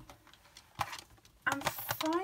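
A few light clicks and a brief rustle from craft supplies and their packaging being handled: one sharp click a little before the middle, then another click with a short rustle near the end.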